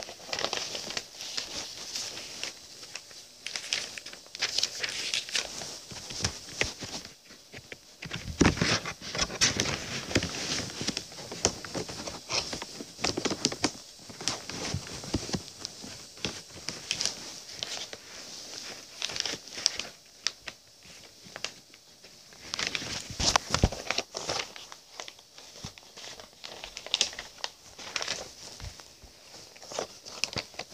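Irregular rustling and crinkling close to the microphone, with scattered sharp clicks and crackles: handling noise, something being moved about and rubbed right at the mic.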